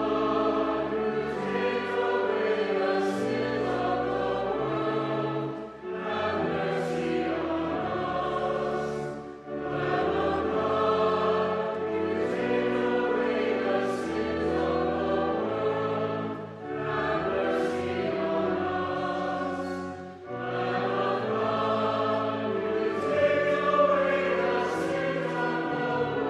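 Choir singing a slow anthem in phrases of held notes, with organ accompaniment sustaining low notes beneath the voices.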